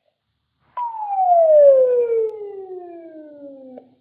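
A single whistle-like tone that starts suddenly and slides steadily down about two octaves over three seconds, loudest at first and fading as it falls, then cuts off: a falling-pitch sound effect.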